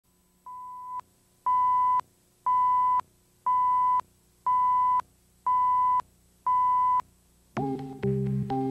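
Countdown leader beeps: a single steady tone sounding for half a second once every second, seven times, the first quieter than the rest. Music starts just before the end.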